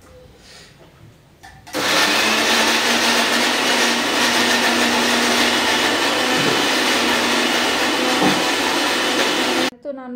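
Electric kitchen mixer grinder running for about eight seconds: switched on a little under two seconds in, a loud even noise over a steady motor hum, and cut off sharply just before the end.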